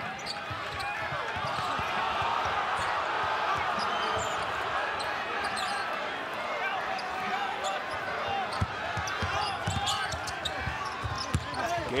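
Basketball dribbled on a hardwood court, short knocks under the steady din of a large arena crowd's voices.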